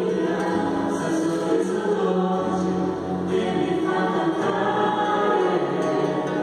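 Choir singing a slow hymn in long held notes that step from pitch to pitch about once a second.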